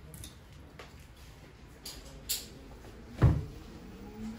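Light clicks of barber tools being handled and set down, then a single louder thump a little after three seconds in.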